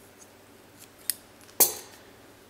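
Metal scissors snipping yarn: two sharp metallic snips about half a second apart, the second louder with a short ring.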